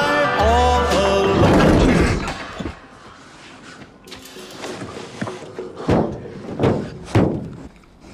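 Tense horror trailer score with deep bass hits and sliding tones, which drops away after about two and a half seconds. In the quieter stretch that follows, a few dull thumps land near the end, about half a second to a second apart.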